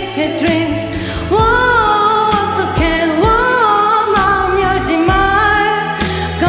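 Live solo singing into a microphone over a karaoke backing track of a Korean pop ballad, the voice holding long notes.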